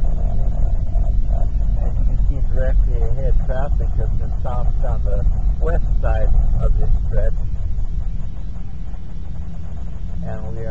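Steady deep road and engine rumble inside a moving car's cabin. A person's voice talks over it for a few seconds in the middle.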